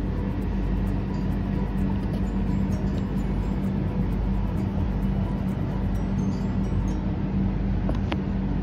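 A steady low hum with a constant background noise, unchanging throughout.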